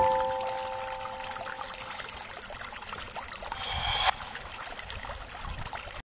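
Electronic intro jingle: held synth notes ring out and fade, over a watery, hissing texture that swells louder and cuts off suddenly about four seconds in.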